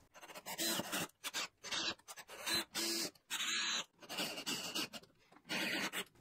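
Cordless drill driving screws through a blind mounting bracket into the top of a window frame, running in a series of short bursts of well under a second each, with brief pauses between.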